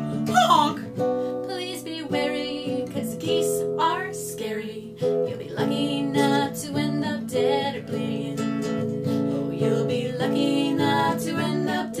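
Acoustic guitar strummed in a steady rhythm, accompanying women singing.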